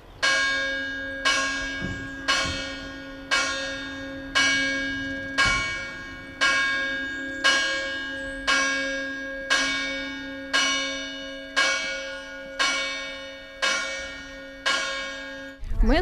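A single church bell tolling steadily, struck about once a second, each stroke ringing on into the next. It breaks off suddenly near the end.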